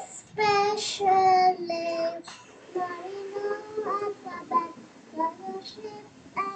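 A young girl singing a graduation song, with no clear accompaniment. A few louder held notes come in the first two seconds, then softer, shorter sung phrases follow.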